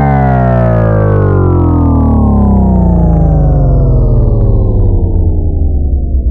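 Cinematic downer bass sound effect: a loud synthesized tone, rich in overtones, sliding slowly and steadily down in pitch over a deep bass rumble, and starting to waver in loudness near the end.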